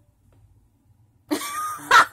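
A person coughing close to a handheld microphone after about a second of near silence: a rough, noisy cough that ends in a sharp, loud burst.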